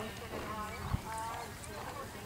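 A horse's hoofbeats on grass, with faint voices in the background and a single knock about a second in.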